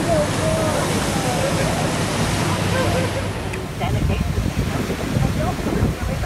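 Steady rush of water and wind from a moving boat, with faint voices in the background. About three and a half seconds in the sound changes to gusty wind buffeting the microphone.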